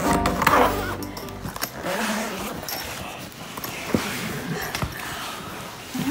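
A zipper on a soft-sided fabric suitcase being run open, followed by rustling and a few knocks as the lid is opened and the person inside moves. Background music fades out about a second in.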